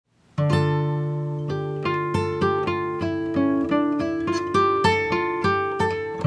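Background music: acoustic guitar playing a run of plucked notes, coming in about half a second in.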